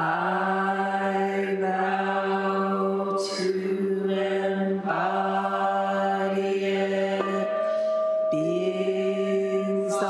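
Buddhist chanting: voices in unison on long held notes at a nearly steady low pitch, each phrase lasting a few seconds before a short break and a fresh start.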